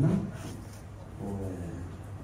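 Brief snatches of people talking in a hall, a voice trailing off at the start and another short phrase about a second and a half in, over a steady low hum.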